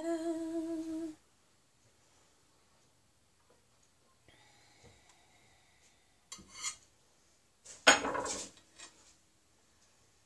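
A woman's short hummed note for about a second at the start, then a metal knife clattering against a plate and the wooden chopping board twice, the second time louder, as it is set down after cutting a slice of cake.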